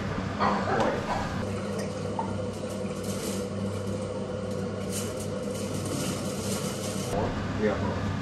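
Water running into a pot for cooking rice, with a few light clinks, over a steady low hum.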